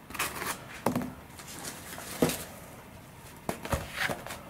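Handling noise: soft rustling with four light clicks and knocks, spread out and irregular.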